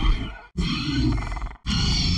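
Dinosaur-style roar sound effects: a run of loud roars about a second long each, broken by brief silent gaps.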